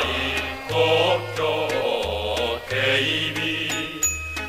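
Mixed choir singing a Japanese wartime song (gunka) with instrumental accompaniment, a bass line stepping from note to note underneath.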